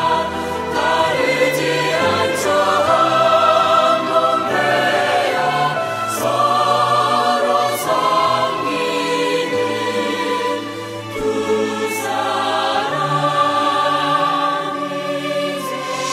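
Background music with choir-like singing in long held notes over a moving bass line.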